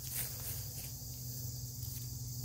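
Steady high-pitched chirring of crickets in an outdoor insect chorus, over a low steady hum, with a faint rustle near the start.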